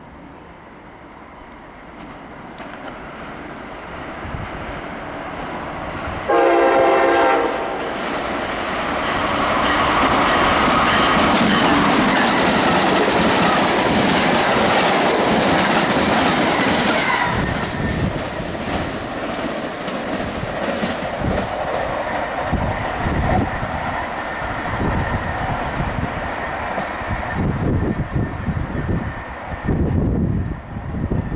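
An electric passenger train led by an Amtrak ACS-64 locomotive approaches and sounds one short horn blast about six seconds in. It then speeds past, loudest for several seconds, and its Amfleet and leased MARC coaches follow with a steady rumble and wheel clatter over the rail joints.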